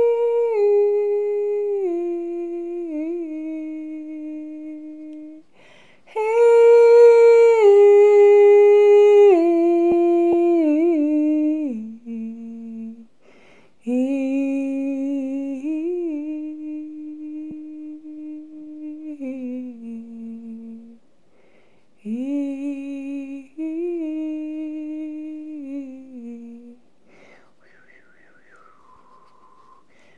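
A woman humming a slow, wordless healing chant in four long phrases. Each phrase steps down through a few held notes and fades, with short pauses between.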